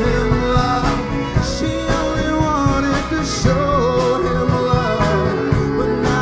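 Live folk-country band playing a song, with fiddle, banjo, acoustic guitar, pedal steel, bass and drums over a steady beat.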